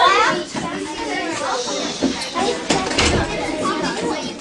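A class of young children chattering, several voices overlapping, with a few light knocks near the end.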